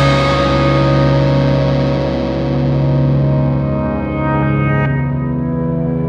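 Post-hardcore band music: distorted, effects-laden electric guitar chords held and ringing out, their high end slowly fading.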